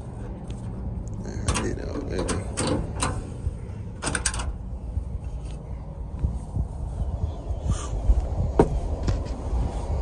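Clicks, knocks and creaks of a side-by-side UTV's cab door and latch being worked open, in a quick cluster a second or two in and a few scattered ones later, over a low rumble.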